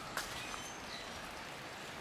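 Quiet outdoor background hiss with a few short, high bird chirps scattered through it, and a single sharp click just after the start.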